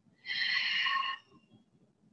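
A person's audible exhale through the mouth, a single breathy sigh about a second long.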